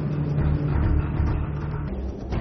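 Jet fighter engines in flight: a steady low drone with a held hum that drops away just before the end.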